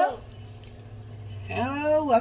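Low steady hum after the music cuts out, then about one and a half seconds in a woman's voice starts a drawn-out, rising call that leads into her speech.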